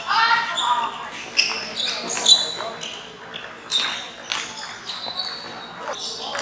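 Celluloid-type table tennis balls clicking sharply off rubber paddles and table tops, at irregular intervals, with a short ping after each hit and echo in a large hall. A voice calls out at the start, and other voices are heard in the background.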